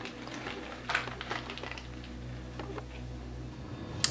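Faint handling noise: a few soft clicks and rustles from the boa being moved about over stone substrate in a plastic tub, over a low steady hum that begins about a second in and stops just before the end.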